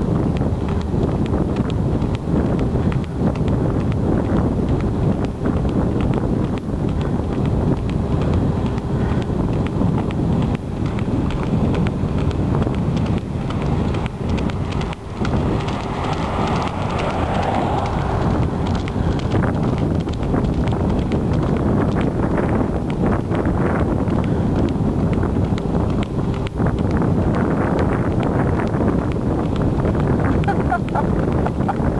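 Wind buffeting the microphone of a power wheelchair moving at about 8 mph, over a steady whine from the chair's drive motor that drops out for a few seconds past the middle.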